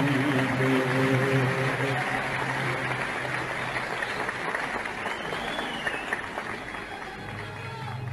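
Concert audience applauding after a sung phrase, the applause slowly fading, while the orchestra holds a low note through the first few seconds; a new low instrumental note comes in near the end.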